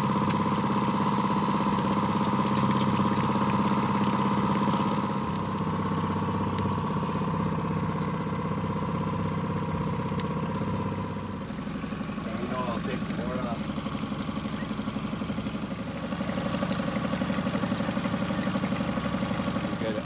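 Boat motor running steadily at slow trolling speed, a constant hum with a higher steady tone above it; a little past halfway the running note changes to a lower, rougher hum.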